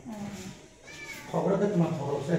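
People talking in a small bare room: a man's voice, untranscribed, with a brief higher-pitched rising and falling sound about a second in.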